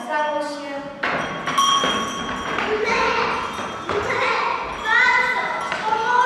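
Children's voices with held, sung-like notes, and a thump about a second in.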